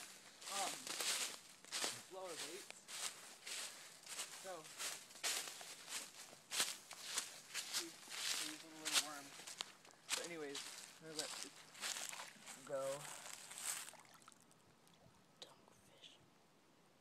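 Footsteps crunching through dry fallen leaves, about two steps a second, stopping near the end. Snatches of a voice come between the steps.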